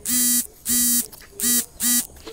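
Smartphone notification alert: four short, buzzy beeps at one steady pitch, unevenly spaced, sounding as an Instagram notification arrives.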